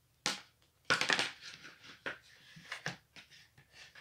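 Handling noise of microphone gear, a small mic on a tripod stand and its cable, being picked up and moved: a sharp click about a quarter second in, a cluster of rattling clatter around a second in, then lighter scattered ticks and rustles.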